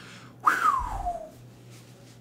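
A man whistling a single falling note, sliding down in pitch over about a second, with breath noise: an exclamation of excitement.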